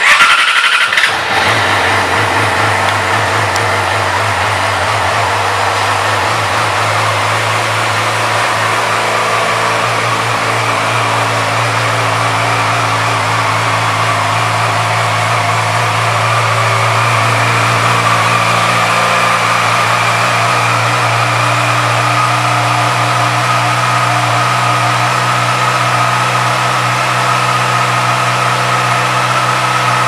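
2012 Yamaha YZF-R6's 599 cc inline-four engine starting with a short burst, then idling steadily.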